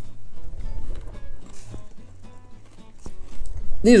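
Close-up chewing of a bite of peanut butter cup filled with crunchy cereal puffs, with a few short crisp crunches, over quiet background music. A man's voice starts at the very end.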